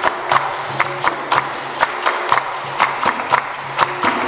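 Capoeira roda music: a circle of people clapping in a steady rhythm, about two claps a second, over an atabaque drum and a steady low tone.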